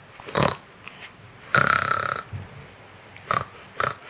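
Newborn baby grunting and squeaking: a short grunt near the start, a longer squeaky whine about a second and a half in, then two brief grunts near the end.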